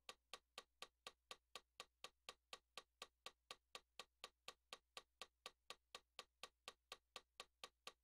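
Faint, evenly spaced ticking, about four to five clicks a second, like a metronome or click track, left bare as a pulse in an atonal electronic music piece.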